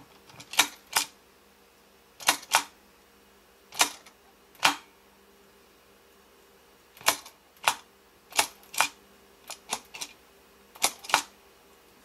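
Sharp plastic clicks from a pull-apart Olaf snowman toy as its head is pushed down and let back up to change his facial expression. The clicks come mostly in quick pairs, about eight presses in all.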